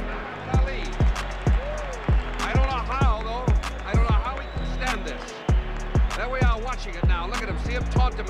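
Backing music with a beat of deep, booming bass-drum hits, a few each second, that drop in pitch, and a voice singing or rapping over it.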